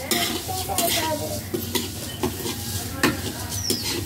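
Metal spatula stirring and scraping in an iron kadhai while oil sizzles, with several sharp clinks of the spatula against the pan.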